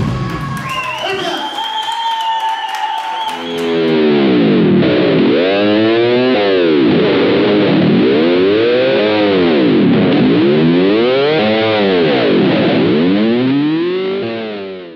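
Distorted electric guitars ending a live metal song, holding steady sustained notes. About three and a half seconds in, this gives way to a distorted electric guitar chord run through a sweeping effect that rises and falls about every two seconds.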